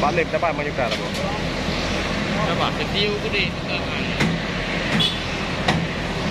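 Crane truck's engine running steadily, with men's voices calling out and a few sharp metal knocks from the steel concrete mixers being handled on the flatbed.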